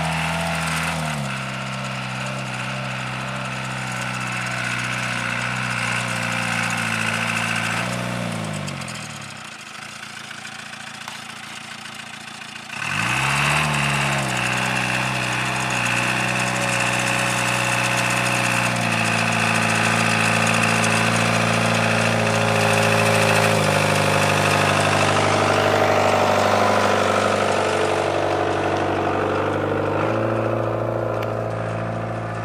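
GAZ-69 off-roader's four-cylinder petrol engine working on a steep grassy slope, its revs rising and falling. It drops back to a quieter lull about nine seconds in, then revs up again about thirteen seconds in and runs louder and steadier to the end.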